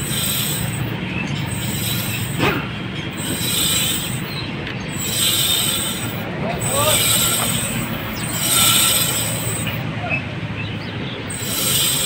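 Hand-spun front wheel of a Honda City i-VTEC scraping metal on metal, a rough grinding that swells and fades with each turn of the wheel. The brake pad is worn through to its steel backing and is rubbing the disc, with the caliper jammed. The sound resembles a broken wheel bearing, which is what the owner first took it for.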